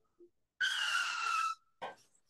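Tyre-screech sound effect from an online racing-style quiz game: a skid about a second long, with a slightly falling squeal. It marks a wrong answer.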